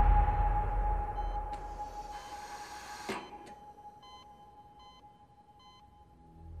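A hospital heart monitor beeping about once a second over a steady high ringing tone. A loud sound fades out beneath them. The beeps are clearest near the end.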